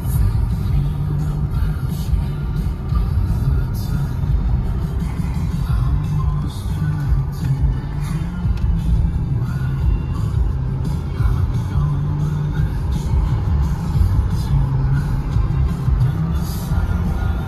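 Music playing from the car's radio inside the cabin, over a steady low rumble of road and engine noise from the moving car.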